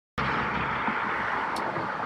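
Steady road traffic noise, an even rush with no distinct events.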